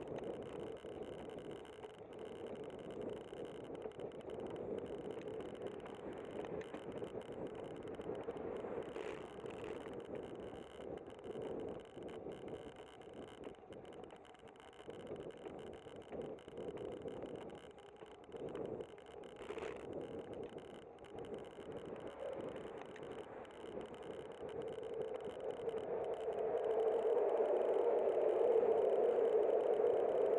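Bicycle ride noise: a steady rush of tyres rolling on asphalt and wind, getting louder over the last few seconds.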